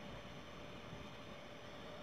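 Faint, steady background hiss: room tone in a pause between spoken phrases.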